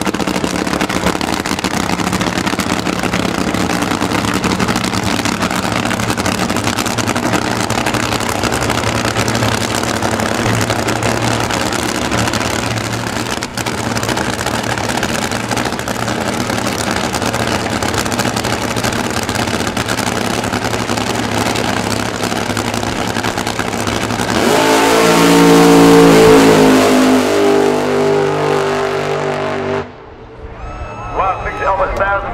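Nitro fuel altered drag car's supercharged engine idling steadily on the start line, with one sharp crack about halfway through. At about 24 seconds it goes to full throttle for the launch, the engine note climbing and growing much louder, then falling away as the car runs off down the strip.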